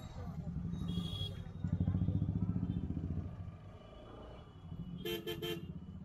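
Street traffic: a motor vehicle's engine passes close, loudest about two seconds in. Near the end a vehicle horn gives three quick beeps.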